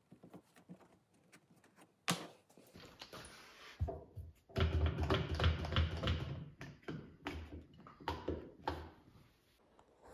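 Hands pressing and tapping wooden guide strips down onto a board with double-sided tape: a sharp tap about two seconds in, then a few seconds of dense rubbing and knocking on the wood, tapering to a few scattered knocks.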